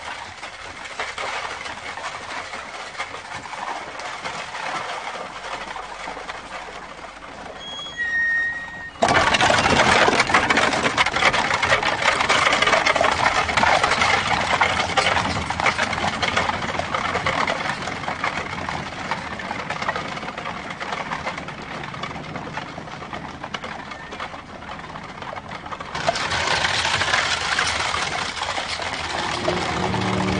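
Horse-drawn carriage rolling over a drive, hooves and wheels making a steady crunching clatter that jumps suddenly louder and closer about nine seconds in.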